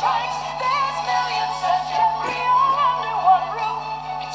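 Sung jingle with backing music from an old Toys R Us television advert, the melody wavering as it is sung, over a steady low hum.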